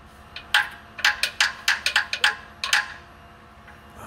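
A hammer tapping repeatedly on a knock sensor on the engine of a GM Workhorse chassis with its big V8 switched off. There are about a dozen quick, uneven metallic taps over two or three seconds. The taps are meant to make the piezoelectric sensor generate a small AC voltage, as a test of the bank-2 sensor flagged by code P0332.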